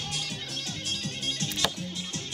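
Background music, with one sharp click near the end as an arrow is shot from a toy bow at a target.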